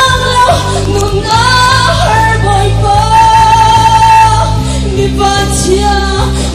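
A woman singing a Christian solo song into a handheld microphone over instrumental accompaniment with a steady bass; about halfway through she holds one long note.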